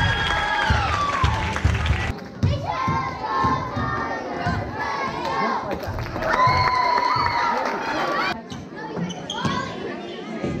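Girls and spectators in a gymnasium shouting and cheering, with long high calls, over the repeated thumps of a basketball bouncing on the hardwood court.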